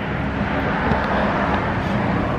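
Steady city street traffic noise: a continuous low rumble with a hiss over it and no distinct events.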